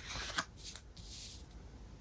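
Sheet of paper being handled on a tabletop: a light tap about half a second in, then a soft rustle and slide of the paper lasting under a second.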